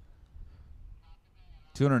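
Faint low background rumble, then a man's commentary begins near the end.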